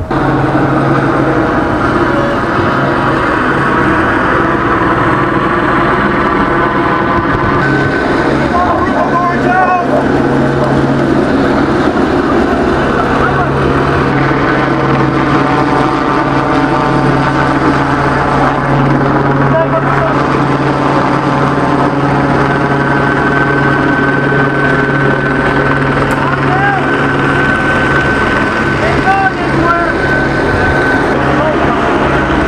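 A loud, steady engine drone with a constant low hum.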